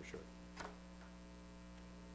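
Low, steady electrical mains hum in a quiet room, with one brief faint click about a third of the way in.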